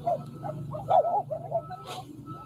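Outdoor street ambience from news-report footage: a steady low hum with short rising-and-falling calls over it and an on-off steady tone, and a sharp click near the end.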